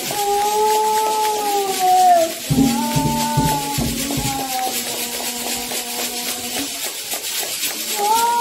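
A woman's voice singing a devotional chant to the orixá Ogum in long held notes, with a rattle shaken in a steady beat behind it. A second, lower voice sings along for a few seconds in the middle.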